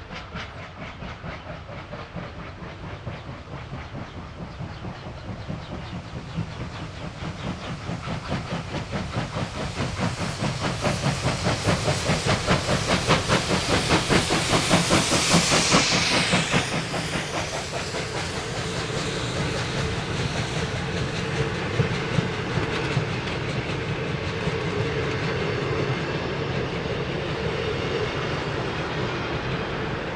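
Victorian Railways R class Hudson steam locomotives, triple-headed, working hard with fast, even exhaust beats and steam hiss, growing louder as they approach and peaking as they pass about halfway through. The carriages then roll by with wheels clicking over the rail joints.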